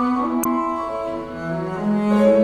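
Double bass played with the bow in a slow legato line of sustained notes, the pitch stepping between held notes. A brief click sounds about half a second in.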